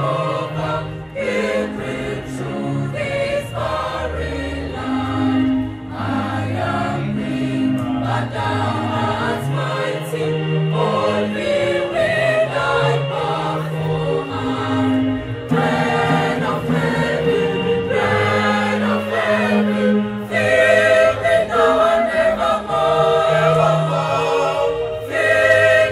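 A mixed choir singing in parts, accompanied by an electronic keyboard holding low sustained notes; the singing swells louder about two-thirds of the way through.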